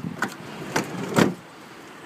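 Footsteps on pavement: three steps about half a second apart over steady outdoor background noise.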